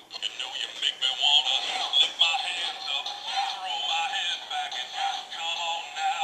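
Battery-powered singing plush toy playing a song with music, its electronic voice high-pitched and continuous.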